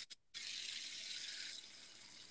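Faint steady hiss, broken by a brief gap of silence just after the start, and dropping lower about one and a half seconds in.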